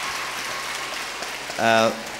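Audience applauding, the clapping fading away over about a second and a half, then a man's voice briefly near the end.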